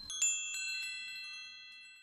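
A bright chime sound effect: a quick run of high, bell-like tones struck one after another in the first second, ringing on together and fading away near the end. It is the cue for the learner's turn to speak the line.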